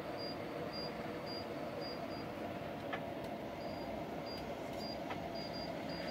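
Steady low room hum and hiss, with a couple of faint clicks about three and five seconds in.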